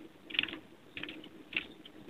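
Quiet typing on a computer keyboard: a string of separate keystrokes.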